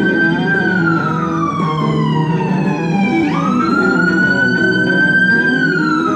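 An emergency vehicle siren wailing in slow rise-and-fall cycles, sweeping back up sharply about three seconds in. An electric guitar plays underneath.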